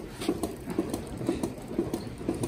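Milking machine running on a cow's udder: the pulsator and vacuum lines give a steady rhythmic clicking, a few clicks a second.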